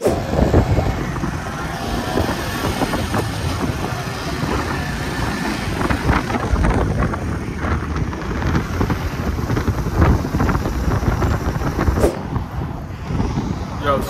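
Wind buffeting the microphone over the rumble of a motorcycle and passing traffic, heard while riding as a passenger on a motorcycle taxi. It eases off about twelve seconds in.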